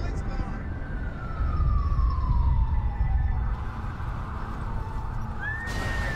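Emergency-vehicle siren over a deep, steady rumble: one siren tone slides slowly down in pitch over a couple of seconds, and a short rising-and-falling wail comes near the end.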